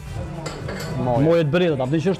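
Light clinks and knocks, then a man talking from about a second in.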